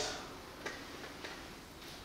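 Faint, evenly spaced ticks, about one every 0.6 s, three in all, over quiet room tone.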